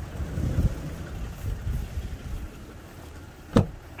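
Wind buffeting the microphone, an uneven low rumble, broken about three and a half seconds in by one sharp click of a pickup truck's door latch as the handle is pulled.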